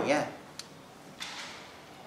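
A single faint click, then a short scratchy rasp a little over a second in, as a small strip of paper is handled and pulled at with the fingers.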